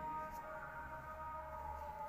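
A steady hum of several held high tones over a low hum, unchanging, with no speech.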